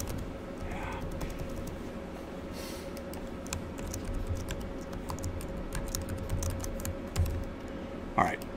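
Typing on a computer keyboard: irregular keystrokes throughout, with a louder click near the end, over a faint steady electrical hum.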